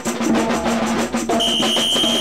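Drums playing a fast, even beat, with a shrill steady whistle blown and held over them during the last part.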